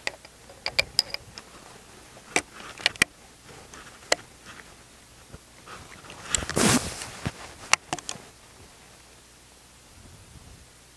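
The breech of a Springfield Trapdoor Model 1884 rifle being worked by hand: a scattered series of sharp metallic clicks and clacks as it is reloaded, with a short scraping rustle a little past halfway.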